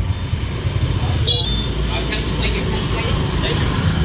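Street traffic: a steady low rumble of passing engines, with a brief higher-pitched sound about a second in.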